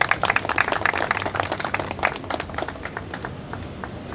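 Applause from a small group of people, thinning out and dying away near the end.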